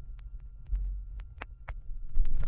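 Stylus riding the run-out groove of a spinning vinyl LP after the last track: scattered clicks and pops over a low rumble, with a faint steady tone.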